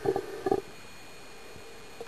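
Two short underwater gurgling sounds about half a second apart, over a steady faint hiss.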